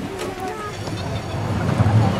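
Voices talking, with a low rumble building from about a second in and becoming the loudest sound.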